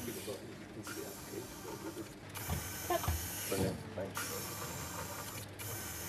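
Motors of three bionic prosthetic fingers on a test rig, whirring in repeated bursts of about a second and a half that start and stop sharply as the fingers close and open, with a few knocks about halfway through.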